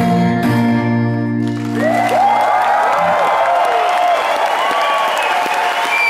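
The last strummed chord of a song on a steel-string acoustic guitar rings out and dies away about a second and a half in. The audience then breaks into applause with cheers and whistles.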